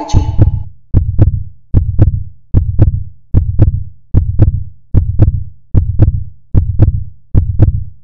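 Outro sound of a synthetic heartbeat-like beat: a low double thump repeating evenly about every 0.8 s, each pair with a sharp click on top.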